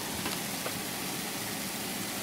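Steady hiss of streamer and corona discharge from a Class E solid-state Tesla coil running continuously, with a couple of faint ticks in the first second. The coil is switching cleanly in Class E mode and drawing about 250 watts.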